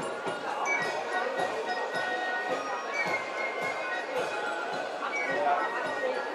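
A German Spielmannszug (corps of drums) playing a march: high marching flutes carry the tune over a steady beat of snare and bass drums.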